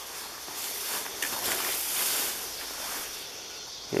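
Footsteps through tall dry grass, the stems rustling against legs with a soft hissing swish that swells in the middle and fades.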